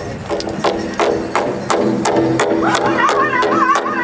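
Powwow drum group: a large drum struck in unison by several drummers, about three beats a second, with singers carrying the song and high-pitched voices rising in a little past halfway.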